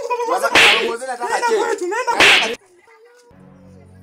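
Two loud, sharp slaps about a second and a half apart, over a high-pitched voice crying out. The sound then cuts off abruptly and gives way to a faint steady background.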